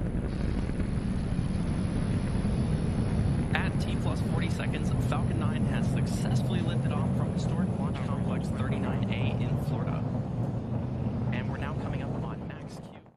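Falcon 9 rocket's nine first-stage Merlin engines heard from the ground during ascent: a loud, steady, deep rumble.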